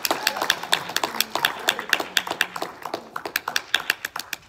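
A small audience applauding: a scatter of separate hand claps, dense at first and thinning out toward the end.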